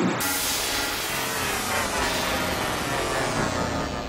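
Synth pad playing through Ableton Live's Chorus at full wet, with the ×20 LFO extend switched on about a fifth of a second in. The pitch modulation runs at an extremely fast rate, turning the pad into a dense, noisy, smeared wash that slowly thins out.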